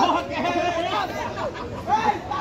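Several people's voices overlapping, talking and calling out close by.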